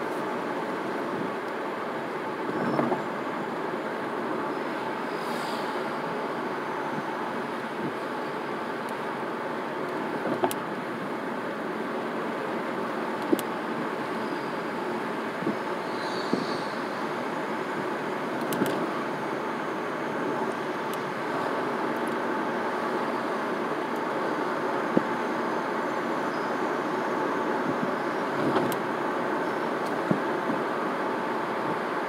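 Car cruising at about 35 mph, steady engine and tyre noise heard from inside the cabin, with a few brief clicks and knocks scattered through it.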